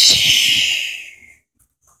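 A loud mouth-made "pshhh" blast, a child's imitation of a toy explosion or shot, starting suddenly and fading out over about a second and a half.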